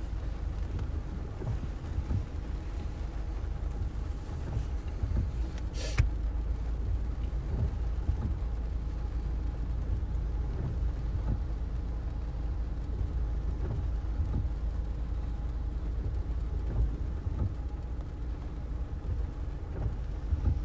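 Steady low rumble inside a stationary vehicle's cabin, with rain on the windshield and the wipers sweeping across the wet glass. One sharp click stands out about six seconds in.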